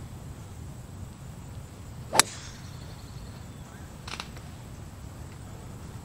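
Golf club striking a ball on a tee shot: one sharp, loud crack about two seconds in, followed by a fainter click about two seconds later.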